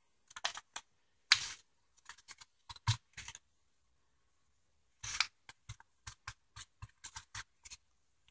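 A crumpled magazine sheet being tapped and dabbed onto wet spray paint, giving an irregular run of soft paper taps and crinkles, with a pause in the middle.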